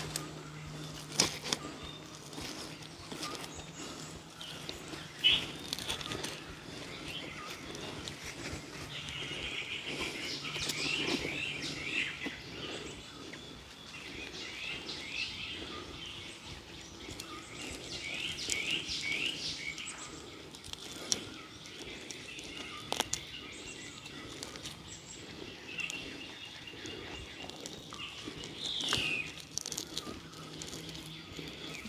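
Small birds chirping in repeated quick runs of short falling notes, with a few sharp clicks among them. A faint steady low hum runs through the first half.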